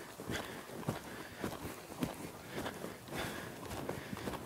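Faint, irregular thuds of horses' hooves on soft dirt arena footing as the horses move about at a slow gait.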